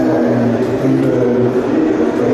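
A man's voice carried over a PA system in a large hall, speaking on without a clear break.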